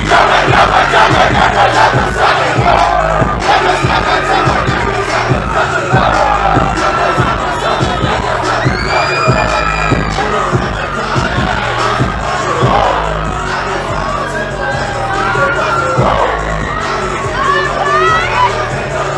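A large club crowd shouting and cheering loudly, many voices at once, over a bass-heavy beat.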